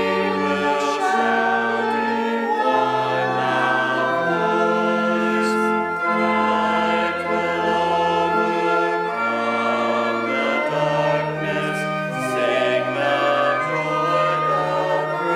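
A hymn sung by a group of voices, with slow held notes that change about once a second over sustained bass notes of an accompaniment.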